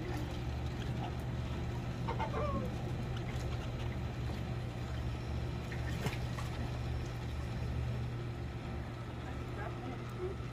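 Faint, distant voices over a steady low hum.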